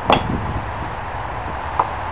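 A single hammer blow right at the start, working a split along a yew log, then a light tap near the end.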